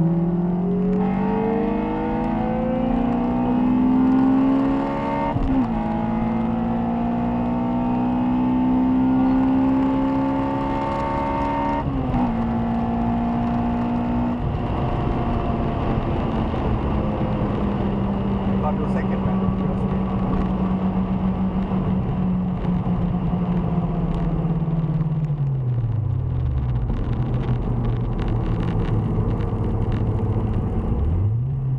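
Honda Civic Type R EP3's K20A four-cylinder engine heard from inside the cabin, revs climbing hard under acceleration with brief drops in pitch about five and twelve seconds in, typical of gear changes. The engine then holds a steady note at speed before the revs fall away near the end.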